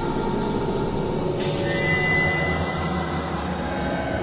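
A steady high-pitched screech with hiss starts suddenly. About a second and a half in, a louder, brighter hiss joins it. All of this sits over a continuous low droning music bed.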